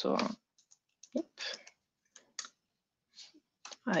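A few scattered, sharp clicks of a computer mouse and keyboard, with quiet gaps between them, as a command is copied and the keyboard app switcher is used to change windows.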